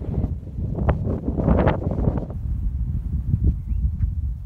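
Wind buffeting a phone's microphone: an uneven low rumble throughout, with a louder, brighter rush about one and a half seconds in.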